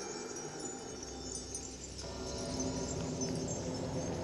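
Film score music: high, twinkling chime-like tones over sustained notes, with a low bass note coming in about a second in and the music slowly growing louder.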